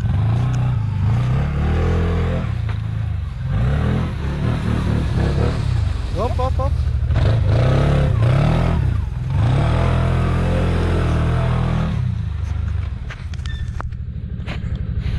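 Quad bike (ATV) engine revving up and down again and again under load as it churns through deep snow.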